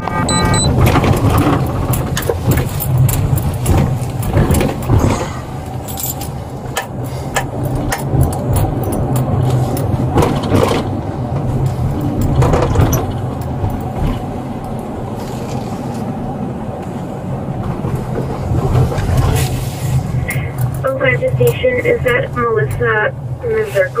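Inside a moving patrol car: a steady low engine and road hum with frequent rustles and knocks from clothing rubbing on a body-worn camera. A voice starts near the end.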